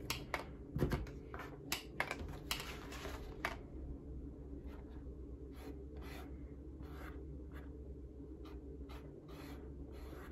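A dye-filled acrylic paint marker being worked along the edge of a veg-tan leather panel: a few sharp clicks and taps in the first few seconds as the marker is handled, then a run of soft, scratchy strokes of the tip on the leather edge.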